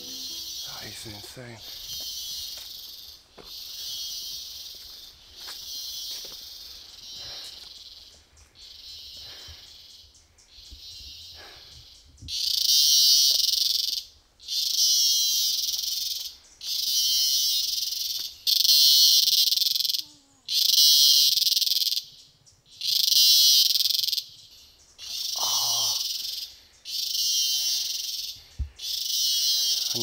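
Cicada calling from the forest trees: a high buzzing repeated in a steady series of calls about a second long with short breaks between, becoming much louder about halfway through.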